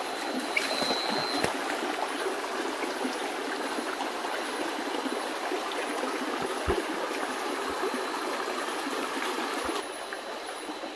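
A shallow, rocky stream running over stones: a steady rush of water, with a few soft low thumps.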